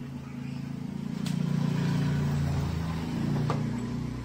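A motor vehicle engine running close by, swelling to its loudest mid-way and then easing off. Two sharp clicks sound over it, about a second in and near the end.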